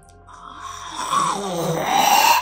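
A woman's voice imitating a horrible guttural sound: a raspy, growling breath that begins about a third of a second in and swells steadily louder.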